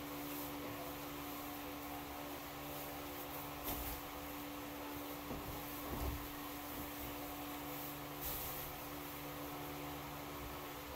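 Steady electric motor hum from the barn's overhead fans, with a few faint knocks and scuffs as things are handled near the floor.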